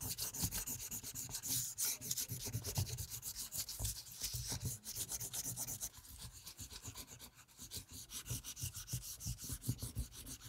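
Japanese kozo paper being burnished by hand over an inked linoleum block: quick, short rubbing strokes, many a second, rasping on the paper as the ink is pressed into it. The rubbing is a little softer in the second half.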